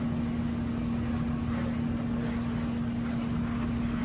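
A steady, unchanging hum with a constant noisy rumble underneath, from a machine running in the room.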